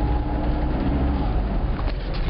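Car cabin noise while driving: a steady low rumble of engine and tyres on the road.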